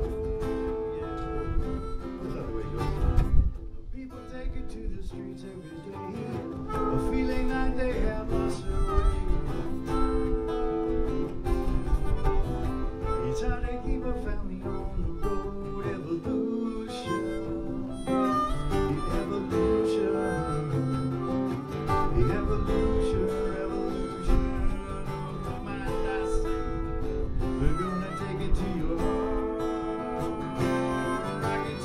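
Acoustic guitar strumming with a harmonica playing sustained melody lines over it, an instrumental passage without singing. There is a brief softer dip a few seconds in.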